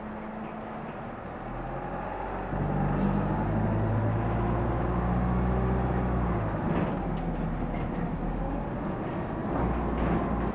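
Dennis Dart SLF bus's diesel engine heard from inside the passenger saloon while the bus is moving. The engine grows louder and works harder from about two and a half seconds in, eases off around seven seconds, then picks up again near the end. A faint high whine rises and falls above it while the engine is working.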